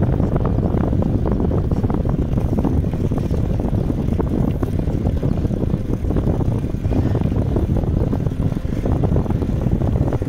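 Wind buffeting the microphone of a camera riding on a moving bicycle: a steady, heavy low rumble that fluctuates without break.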